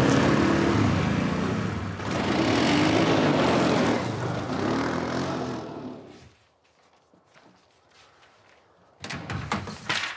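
Two quad bikes (ATVs) racing, their engines revving up and down, fading out about six seconds in. Near the end, a few sharp knocks and rustles.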